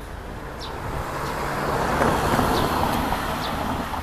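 A car (a Mercedes-Benz E-class wagon) drives past close by. Its engine and tyre noise swells to a peak a little past halfway, then fades as it moves away.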